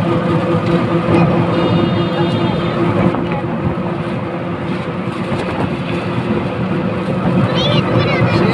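Engine hum and road noise of a moving vehicle, heard from inside it, steady throughout, with a brief high-pitched tone from about one and a half to three seconds in.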